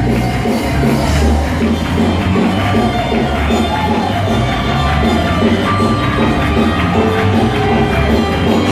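Loud live worship music from a church band with strong bass, voices singing along, and the congregation clapping.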